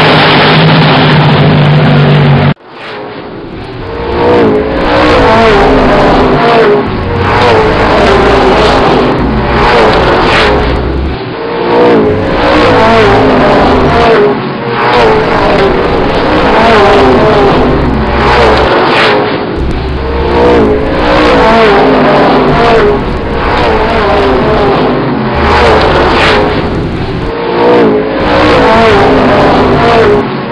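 A Land Rover Defender's engine under hard acceleration, its pitch climbing repeatedly and dropping back at each gear change, over loud road and wind noise. A loud steady drone before it cuts off abruptly about two and a half seconds in.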